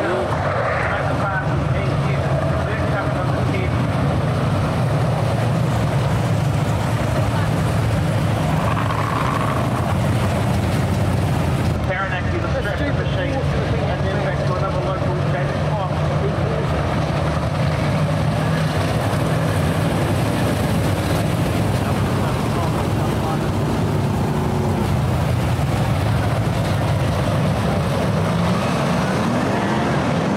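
A field of winged sprint cars running round the dirt oval, their engines a steady drone throughout. Near the end the engine pitch rises as the cars accelerate.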